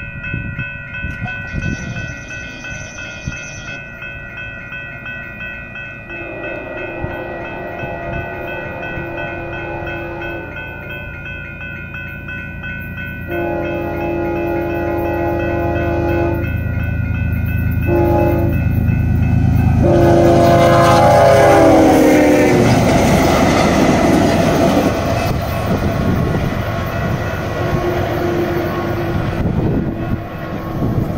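A train horn sounds the grade-crossing pattern: two long blasts, a short one, then a final long blast that slides down in pitch at its end. Over a steady ringing crossing bell, the low rumble of the approaching train builds to its loudest around the last blast.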